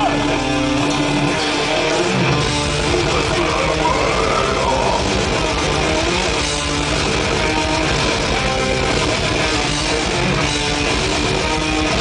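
Death metal band playing live through a festival PA: distorted electric guitars and bass playing a heavy riff, with the low end filling in about two seconds in.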